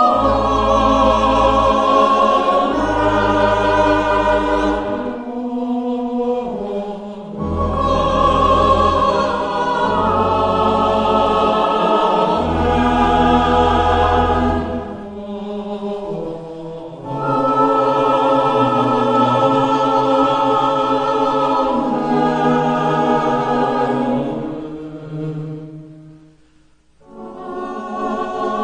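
Church choir singing a slow hymn over a deep sustained accompaniment, in phrases with short breaks between them. Near the end the music fades almost to nothing, then starts again.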